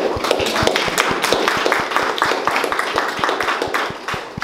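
Audience applauding, many hands clapping at once.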